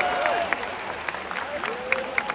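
Large stadium crowd at a rugby match: many voices shouting over one another, with scattered hand claps, the noise easing a little after a louder surge.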